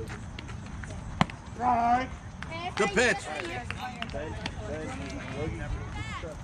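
Raised voices calling out at a youth baseball game, with two loud high-pitched shouts about two and three seconds in. A single sharp crack comes a little over a second in, before the shouts.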